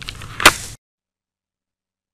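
A brief rustle with one sharp, loud knock about half a second in, then the sound cuts off abruptly into dead silence.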